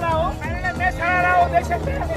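Men's voices calling out in drawn-out, held tones over a steady low rumble of wind and road noise from a moving open-sided battery e-rickshaw.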